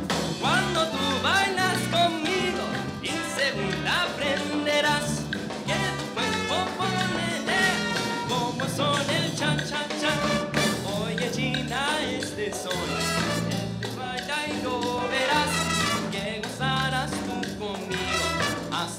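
Live salsa band playing an instrumental passage: trumpets and trombones over a steady bass line, piano, guitar and Latin percussion.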